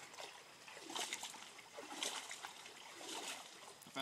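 Faint water sounds: a few soft splashes and some trickling from shallow water.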